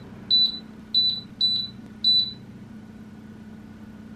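Wall-mounted split air conditioner beeping as buttons on its remote are pressed: about five short, high beeps in the first two and a half seconds, then only a steady low hum.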